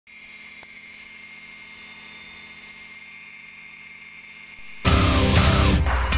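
Steady drone of a Gyrobee gyroplane's engine and propeller in flight, heard from the open pilot's seat. Near the end, loud rock music cuts in suddenly and covers it.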